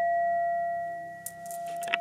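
Singing bowl ringing out, a steady tone with a few higher overtones that fades away over the second half. A small click comes near the end as the ring dies.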